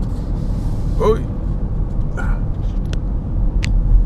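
Steady low road and engine rumble heard inside a moving car's cabin, with a few light clicks of handling as the camera is turned around in its mount.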